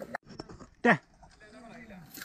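A person's short, loud shout that falls steeply in pitch about a second in, with a quieter voice near the end.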